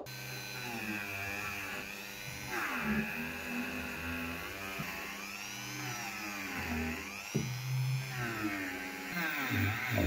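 Handheld rotary tool running with a small wire brush, scrubbing the threads and bore of a brass faucet. Its whine rises and falls in pitch as the brush bears on the metal.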